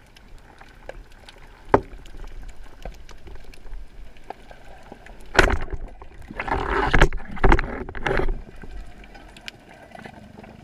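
Underwater sound through a camera mounted on a speargun: water noise with a sharp knock a little under two seconds in, then a loud cluster of knocks and rushing water from about five and a half to eight seconds.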